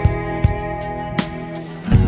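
Instrumental background music: sustained notes with a few sharp, evenly placed beats.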